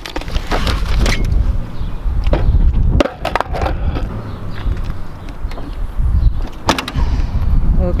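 Skateboard wheels rolling over rough concrete in a steady low rumble, with several sharp clacks of the board about half a second and a second in, around three seconds in, and near seven seconds.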